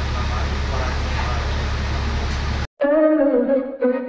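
Steady running noise of a double-decker bus heard from its upper deck, with a low engine drone. It cuts off abruptly about two and a half seconds in, and after a short gap a voice is heard until the end.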